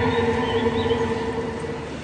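Background score: a held synthesized chord that thins out and fades near the end.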